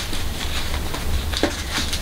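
Soft rustling of a linen fabric wrap as hands untie and unfold it around a shampoo bar, with a light tap about one and a half seconds in, over a low steady hum.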